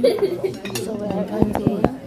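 Cutlery clinking on plates, with three sharp clinks near the end, over a murmur of voices.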